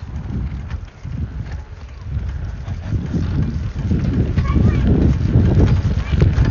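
Wind buffeting and clothing rubbing on a phone microphone held against a hoodie while cycling: an uneven low rumble that grows louder about halfway through.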